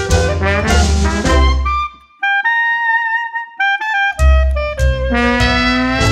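Hot-jazz band recording with horns over a steady bass beat. About two seconds in, the band stops for a short solo break by a single wind instrument, and the full band comes back in about two seconds later.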